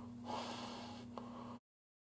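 A faint breath out from a man close to the microphone, over a steady low hum, with a small click just after a second in. The sound cuts off suddenly to silence about a second and a half in.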